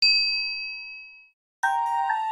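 A single bright bell-like ding sound effect, struck once and fading out over about a second. Chiming music begins near the end.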